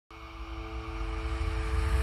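Cinematic intro swell for a logo animation: several steady held tones over a deep rumble, growing steadily louder.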